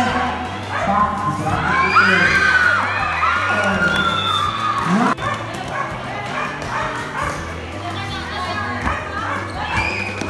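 Courtside crowd and players shouting and cheering over a volleyball rally, with shrill, high-pitched shouts that rise and fall between about two and four seconds in. A single sharp smack comes about five seconds in.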